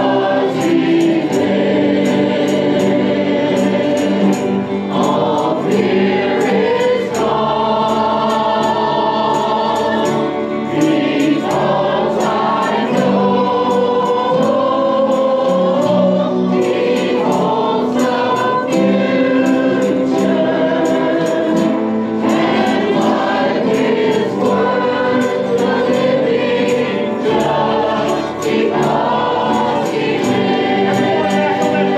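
A church choir of men's and women's voices singing a gospel song together, in long held phrases.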